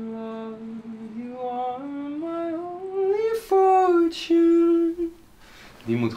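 A man humming a wordless melody in a small room. The line climbs in steps over the first three seconds, then settles into louder held notes that stop about five seconds in.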